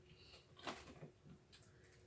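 Near silence, with a few faint short rustles of small candy wrappers being handled and opened, the clearest about two thirds of a second and one second in.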